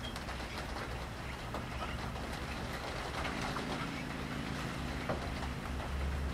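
Air bubbling in an aquarium, a fine crackle of small pops, over a steady low hum that gets louder and gains a higher tone about three seconds in.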